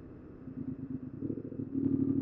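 Yamaha MT-07's parallel-twin engine running at low revs as the motorcycle rolls slowly forward in first gear with the clutch fully let out. It is a low pulsing rumble that grows louder in the second half.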